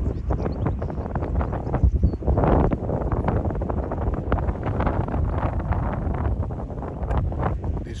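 Strong gusty wind buffeting the microphone, a low rumbling rush that swells and falls, strongest about two to three seconds in.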